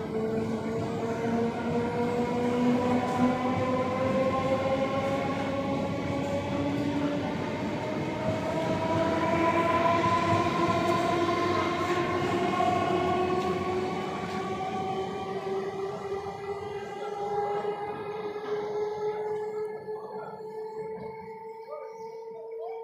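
Electric local train (EMU) running through a station: a whine of several tones that rises slowly in pitch as the train gathers speed, over the rumble of its wheels, growing fainter over the last several seconds.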